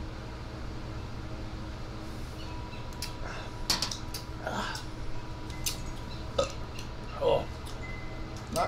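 Men sipping and swallowing beer, followed from about three seconds in by a few short mouth and throat sounds after swallowing, and a glass set down on a metal table. A steady low hum runs underneath.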